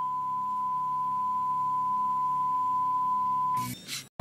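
A single long, steady, pure electronic beep tone, like the test tone played with TV colour bars, held for nearly four seconds and cutting off shortly before the end.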